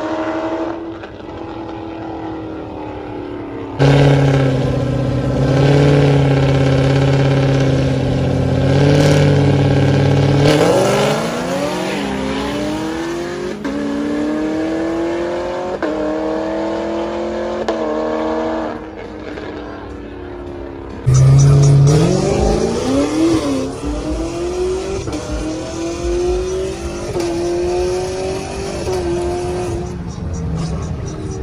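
Drag-racing car engines on the strip: revs held steady and loud for several seconds, then accelerating hard with pitch climbing and dropping back at each upshift. A quieter spell follows, then a second loud run of rising, gear-by-gear acceleration starts suddenly about two-thirds of the way in.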